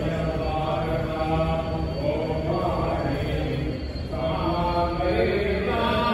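Voices chanting a devotional mantra in long, held notes, with a brief dip about four seconds in before the chant picks up again.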